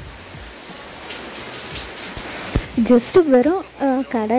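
Steady hissing from an aluminium pan heating on a gas stove burner. A woman starts speaking about three seconds in.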